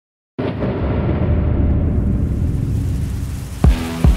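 Opening of a hip-hop beat mix: a loud, low boom-like rumble swells in and fades over about three seconds. Near the end a pounding kick drum and sustained synth notes come in.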